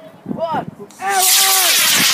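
A model rocket's motor firing at lift-off: a loud rushing hiss starts about a second in and keeps going, while people call out over it.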